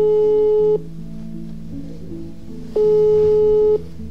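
Two one-second beeps of a telephone ringback tone, a steady mid-pitched tone about three seconds apart, the sound of an outgoing call ringing at the other end. Background music continues underneath.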